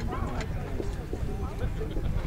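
Onlookers talking in the background, over a steady low rumble.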